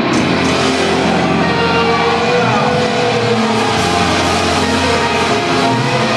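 Heavy metal band playing live, with loud distorted electric guitars and drums; a pitch slides down a couple of seconds in.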